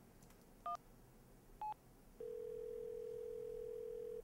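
Phone keypad tones: two short beeps about a second apart as a number is dialled. Then a steady ringing tone sounds in the earpiece for about two seconds, the call ringing through at the other end.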